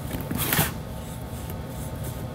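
A Fluid Chalk ink pad rubbed against the paper-covered edge of a box: one short, soft brushing swipe about half a second in.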